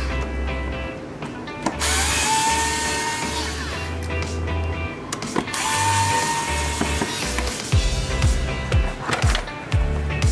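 Phillips screwdriver turning out the screws of a plastic air filter housing lid, in three short spells, over background music with a steady beat that grows stronger near the end.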